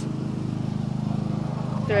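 Steady low drone of an engine running without change.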